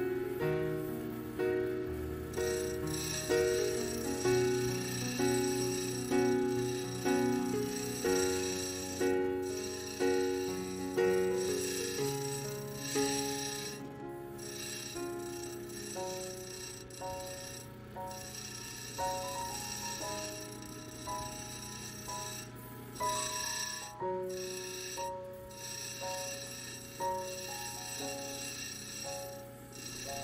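Background music: a slow melody of ringing notes, each struck and fading away, about one a second.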